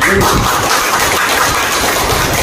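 Audience clapping, starting suddenly and holding steady.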